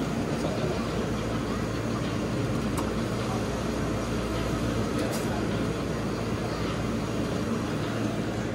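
Steady low mechanical hum of running refrigeration machinery, with no clear rise or fall.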